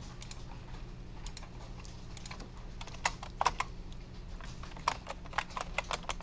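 Typing on a computer keyboard: irregular keystrokes, a few clustered together about halfway through, over a low steady hum.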